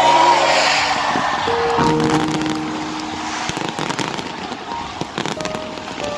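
Fireworks going off in many sharp crackles and pops, with an electronic music track playing over them.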